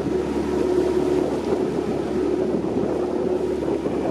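A small boat's outboard motor running steadily under way, with a constant drone and wind rushing over the microphone.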